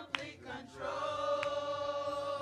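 Church choir singing, settling about a second in onto one long held note, with single hand claps about a second and a quarter apart.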